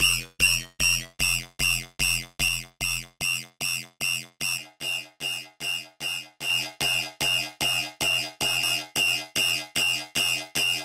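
A single synthesizer note repeated in short pitched stabs, about three a second, from a Serum track run through resonator, EQ and reverb effects. A few seconds in the stabs grow quieter and thinner, then come back fuller in the middle range, as the effect settings are changed.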